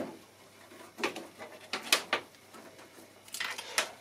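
Scattered light clicks and knocks of hands working at the rudder cable fittings along the side of a carbon-fibre kayak cockpit, a few at a time with short gaps between.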